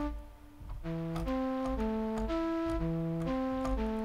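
Sytrus FM synthesizer's 'Flute' preset playing a melody of short held notes, played live from a MIDI keyboard. The notes pause briefly near the start and resume about a second in.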